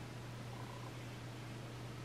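Steady low hum under an even hiss: the room tone of the recording, with nothing else happening.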